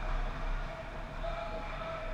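Ice-rink ambience during a hockey game: a steady low hum and noise, with faint distant voices in the second half.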